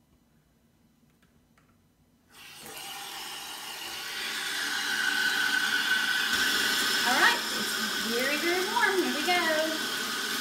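Bathtub faucet turned on: water starts pouring from the spout into a filled tub about two seconds in and runs steadily, growing louder over the next few seconds. Over the last few seconds some squeaky tones glide up and down over the water.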